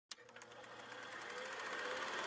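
A rapid, evenly repeating rattle of ticks, fading in from silence and growing steadily louder.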